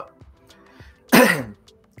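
A man clears his throat once, a little over a second in: one short, loud, rough rasp.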